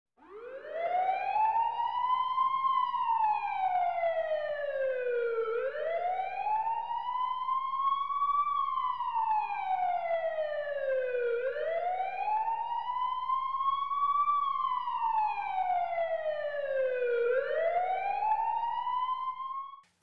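A warning siren wailing, its pitch rising slowly and falling back in cycles of about six seconds: three full rises and falls, then a fourth rise that cuts off suddenly near the end.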